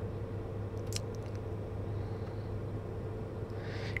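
Steady low hum inside a car cabin, with one faint click about a second in.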